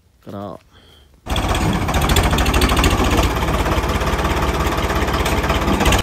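A Ford tractor's diesel engine works hard as it backs a rear scraper blade into a heap of soil. It comes in abruptly about a second in and runs loud, with a fast, even firing beat.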